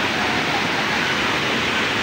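Steady rush of a waterfall and of shallow water running over rock, with the chatter of a crowd faintly in the background.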